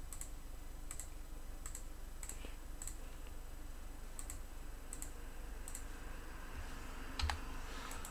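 Computer mouse clicking: about ten light clicks, roughly one every three-quarters of a second, as star brush marks are stamped onto the image. A faint steady low hum runs underneath.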